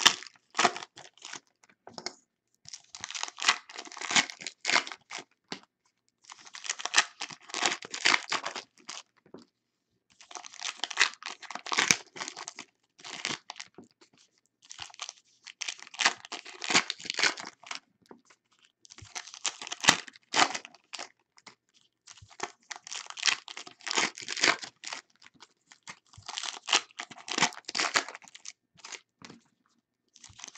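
Foil wrappers of 2017 Unparalleled Football trading-card packs being torn open one after another, with crinkling as the wrappers are pulled back and the cards slid out. A burst of tearing and crinkling comes about every three to four seconds, about eight packs in all.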